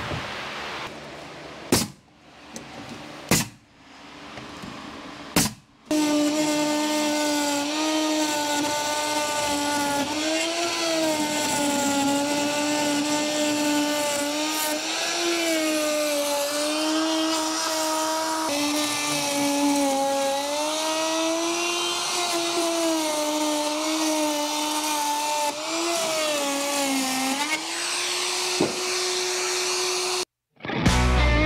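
Three sharp knocks in the first few seconds, then an electric random orbital sander starts and runs steadily on plywood sheathing. Its motor hum wavers slightly in pitch as the pressure on the pad changes.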